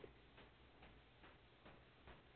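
Near silence with faint, evenly spaced ticks, about two a second.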